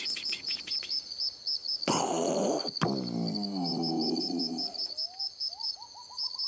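Crickets chirp in an even, rapid high pulse throughout. A firework bursts about two seconds in, and a sharp crack follows just before three seconds. A low, wavering sound with a voice-like pitch then falls away, and short rising chirps start near the end.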